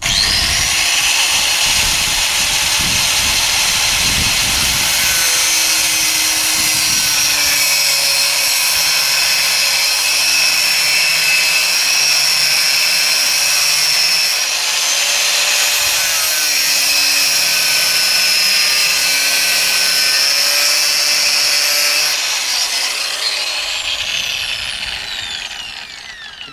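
Angle grinder with a thin cut-off disc, about a millimetre thick, cutting a slot into a metal rod clamped in a vise. It comes up to speed at once and runs loud and steady under load, then near the end it is switched off and spins down with a falling whine.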